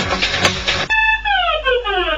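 Trance dance music with a driving beat that cuts off abruptly about a second in, giving way to a synth tone sliding steadily down in pitch.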